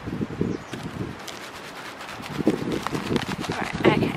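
Wildflower seeds rattling inside a cardboard seed-shaker box as it is shaken over soil, a quick irregular patter of small clicks, over the low rumble of wind on the microphone.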